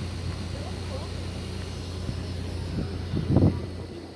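Steady low drone of a riverboat's engine, with faint voices over it and a brief louder bump a little past three seconds in.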